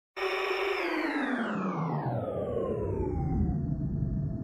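Synthesized intro sound effect: a noisy synthesizer sweep that starts abruptly and falls steadily in pitch over about three seconds, then settles into a low, steady drone.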